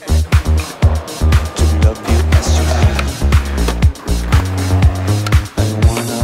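Background music with a steady drum beat and a deep bass line.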